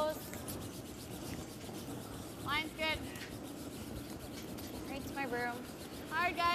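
Curling brooms sweeping the ice in a steady scrubbing rush as a stone travels, with a player's short shout about halfway through and another near the end.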